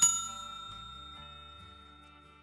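Notification-bell ding of a subscribe-button animation: one bright bell strike that rings on with several clear tones and slowly fades away.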